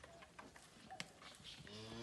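Near silence with a few faint clicks, then near the end a zebu calf starts to moo: a low call that rises in pitch.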